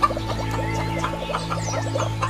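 Farmyard ambience: a rapid run of short clucks and chirps from chickens over steady background music.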